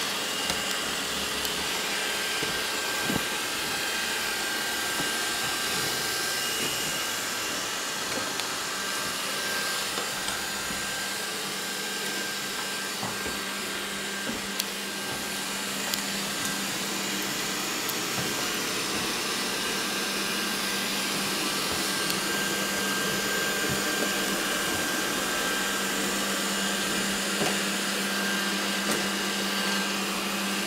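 Robot vacuum cleaner running across a parquet floor: a steady whirring hiss with a thin high whine and a few faint clicks.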